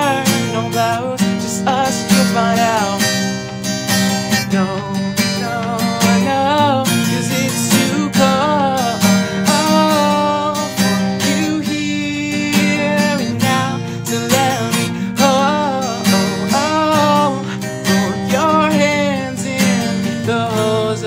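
Acoustic guitar strummed steadily through the song's chords, with a voice singing a wavering melody over it.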